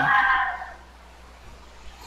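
The tail of a spoken word, then a pause holding only faint steady hiss and a low hum from the recording.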